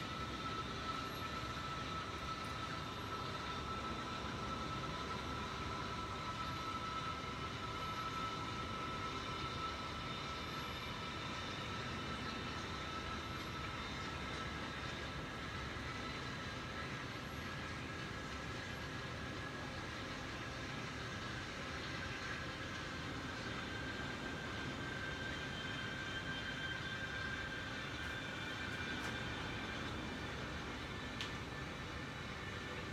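A steady mechanical hum with hiss and several high whining tones that slowly shift in pitch, unchanging in level throughout.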